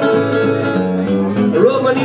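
Acoustic guitar strummed steadily, a country-folk accompaniment played solo between sung lines.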